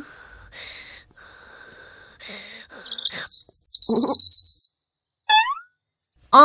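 Bird chirps: a high call that falls in pitch about three seconds in, and a sharp downward-sweeping chirp near the end. A short, louder low-pitched sound comes in between, about four seconds in.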